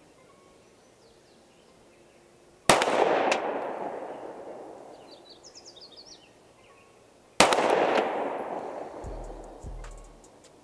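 Two 9 mm pistol shots, about four and a half seconds apart, each followed by a long rolling echo that dies away over several seconds: slow, aimed fire at a 25-yard target.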